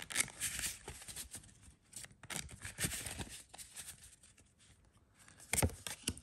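A deck of tarot cards being shuffled by hand: quick papery rustles and flicks of card against card, dying down for a moment before a single sharp snap near the end as a card is laid down on the wooden table.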